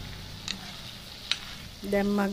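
Yard-long beans frying softly in oil while a wooden spoon stirs them around the pot, with two light clicks of the spoon, about half a second and just over a second in.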